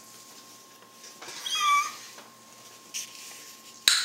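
A short, high-pitched squeal about a second in, lasting just over half a second, followed by a sharp click near the end.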